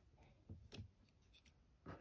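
Near silence broken by a few faint, short scratchy rubs and light clicks: hands handling toy packaging.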